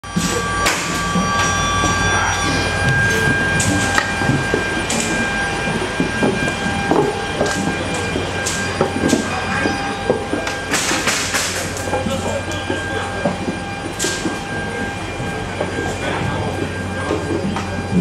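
Steady machinery hum with a thin high whine over it, echoing in the Antonov An-225's huge metal cargo hold, broken now and then by sharp metallic clanks, a cluster of them just past the middle.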